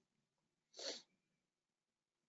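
Near silence, broken a little under a second in by one short, faint puff of breath, a quick inhale or sniff.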